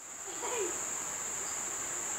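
A steady, unbroken high-pitched trill or whine in the background, with a faint low murmur about half a second in.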